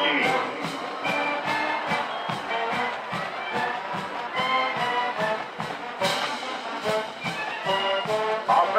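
Marching band playing: brass chords held over a steady, even drum beat. A PA announcer's voice finishes a name at the very start.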